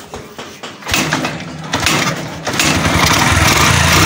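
A 125 cc motorcycle engine starting up: it fires about a second in and settles into a steady run from about two and a half seconds. It is being run to test the charging after its stator was converted to full-wave.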